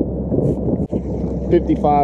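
Bass boat's outboard motor running under way, with wind buffeting the microphone as the hull runs over the water. A brief dropout a little under a second in.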